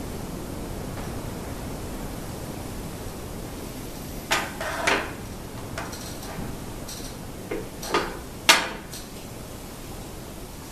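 Short knocks and clacks of a plywood tenon jig and its fence being shifted and set on a stopped table saw, about five of them from about four seconds in, the loudest near the end, over a steady hiss.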